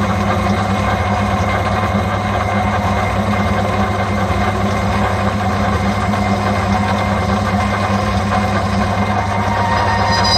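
Myford Super 7 metal lathe running steadily as it turns a steel bar, a constant motor and drive hum with no change in speed.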